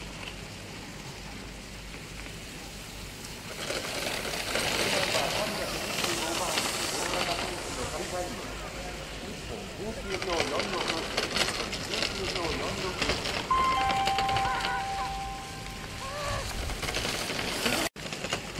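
Ski edges scraping and carving on hard-packed snow as a giant slalom racer turns through the gates: a hissing rasp that starts about three and a half seconds in and comes in waves with each turn. Near the end a steady two-note tone sounds for a couple of seconds.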